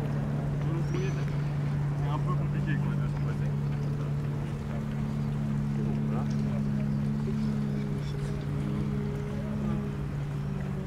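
Steady low hum of a boat engine running in the harbour, holding one pitch throughout, with faint voices of people walking nearby.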